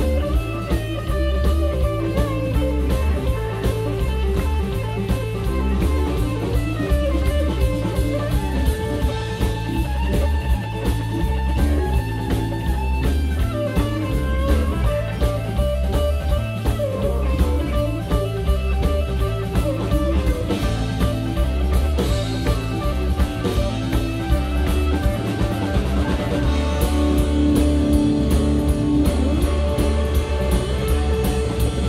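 Live blues-rock band playing an instrumental passage: electric guitar playing a lead line with bent, sustained notes over bass and a drum kit keeping a steady beat.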